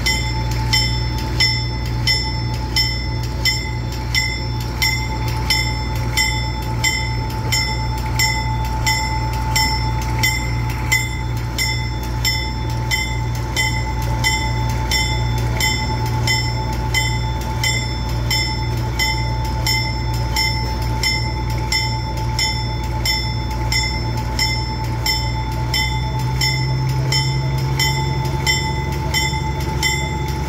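A narrow-gauge train rolling slowly, heard from on board: a steady low rumble with an even click a little more than once a second as the wheels pass the rail joints.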